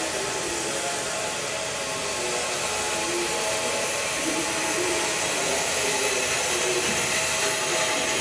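Steady machinery noise from the running pyrolysis unit: an even hiss over a low hum, unchanging throughout.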